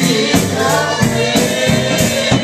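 Live gospel song: voices singing over a drum kit that keeps a steady beat.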